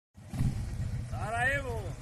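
Motor trike's engine idling with a steady, lumpy low rumble. A person's drawn-out call that rises and falls in pitch comes over it in the second half.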